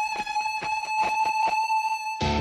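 Background music: a single held note sustains over quick, even ticks, about six a second.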